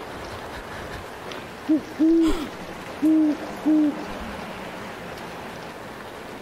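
Owl hooting: four low hoots, a short one and a longer one, then two more about a second later, over a steady low hiss.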